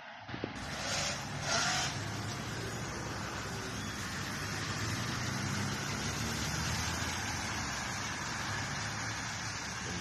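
Street traffic on a wet road: a steady rumble and hiss of passing vehicles, with two brief louder swishes about a second in.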